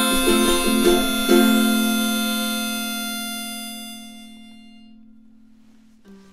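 Ukulele strummed through the last bars of a song, ending on a final chord about a second in that rings out and fades away over the next few seconds.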